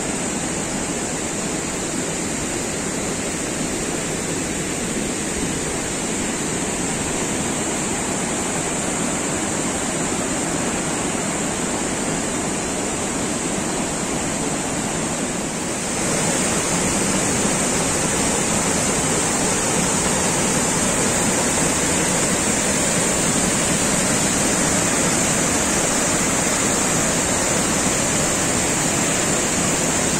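Rushing water of a rocky mountain river, a steady even roar. About halfway through it gives way to a louder cascading forest stream tumbling over boulders.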